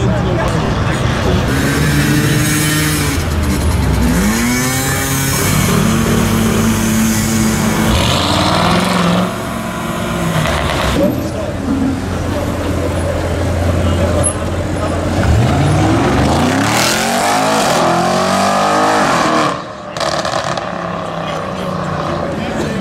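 Audi RS6 C7's twin-turbo V8 through a Milltek straight-pipe exhaust, very loud, revving and accelerating hard several times. Each pull rises and falls in pitch, partly echoing in a road tunnel.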